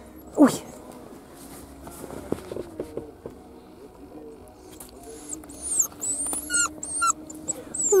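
Caucasian Shepherd puppy whimpering, with a run of high-pitched whines from about five seconds in, over the steady low hum of the moving car. The puppy is upset at having just been taken from its mother and littermates.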